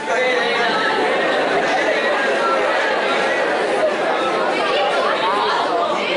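Many voices talking at once, overlapping into indistinct chatter that carries on without a break.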